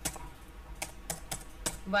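Computer keyboard being typed on: about five separate keystrokes, spaced unevenly.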